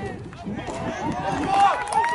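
Spectators and sideline players shouting and cheering during a play, several high-pitched yells overlapping and growing louder toward the end.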